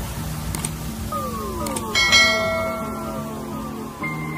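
Subscribe-button animation sound effects over a steady electronic music bed: a couple of small clicks and a set of falling swooping tones, then a bright bell-like ding about two seconds in that rings on.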